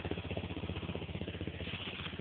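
ATV (four-wheeler) engine running at low speed, a steady rapid putter.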